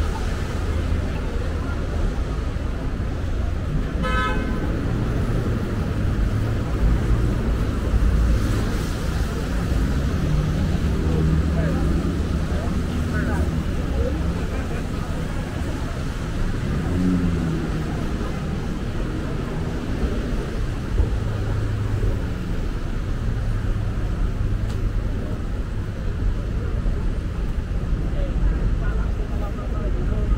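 Busy city street traffic: a steady low rumble of passing vehicles, with a short car horn toot about four seconds in.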